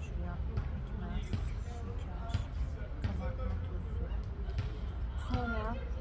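Quiet, murmured speech over a steady low wind rumble on the microphone, with a few soft knocks; clearer speech near the end.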